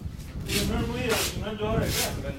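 People talking indistinctly close to the microphone, with a low outdoor rumble underneath.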